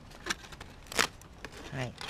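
Aluminium foil crinkling as a foil-wrapped biscuit is opened and handled, with two sharp crackles, the louder one about a second in.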